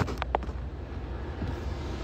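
Low, steady rumble inside a car cabin, with a few short clicks and rubs from a phone being handled in the first half-second.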